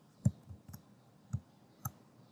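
Five or six short, sharp clicks from a computer mouse and keyboard, spread unevenly over two seconds; the loudest comes about a quarter second in.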